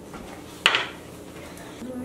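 A small clear glass shot glass set down on a countertop: one sharp clink about two-thirds of a second in that rings briefly.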